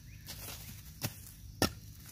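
A long-handled hand hoe strikes into grassy soil twice, once about a second in and again about half a second later. It is chopping down bumpy ridges of dirt to level the ground.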